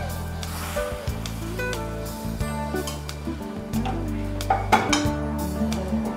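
Background music over cooking sounds: fried pieces tipped into a pan of gravy, then a steel ladle stirring and clinking against the pan, with a few sharp clinks about five seconds in.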